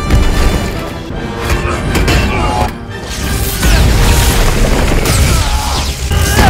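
Film battle soundtrack: music under heavy booms and crashes, with a brief dip a little under halfway through before it swells again.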